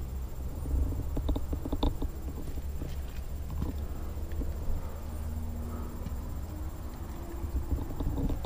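Rustling and handling noise from a body-worn action camera, with scattered footsteps and light knocks over a steady low rumble; a quick run of clicks comes about a second in.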